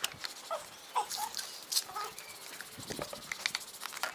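Light splashing and dripping of water in a plastic basin as wet legs are rubbed by hand, with a few short animal calls in the background.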